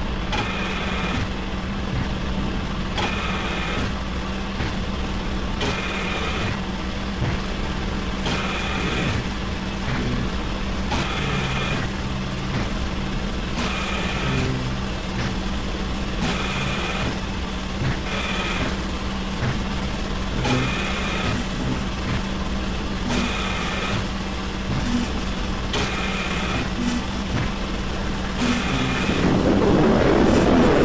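Experimental industrial noise music: a steady low drone under a mechanical pulse that repeats about every second and a half, with a swell of dense noise rising near the end.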